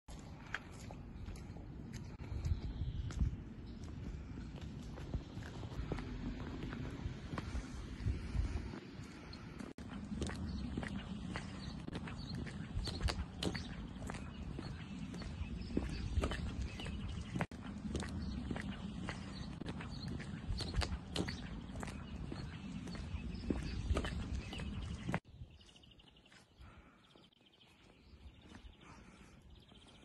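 Wind rumbling on a phone microphone outdoors in falling snow, with crunching footsteps in fresh snow heard as irregular short clicks. Near the end it drops to a faint hush.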